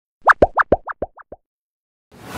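A channel-logo sting made of cartoon 'bloop' pop sound effects: about eight quick upward-sliding pops in a rapid run, alternating higher and lower in pitch and getting fainter towards the end.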